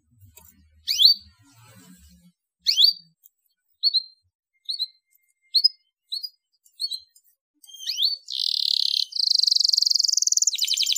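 Domestic canary calling with single short chirps, about one a second, then about eight seconds in breaking into a continuous song of rapid trills.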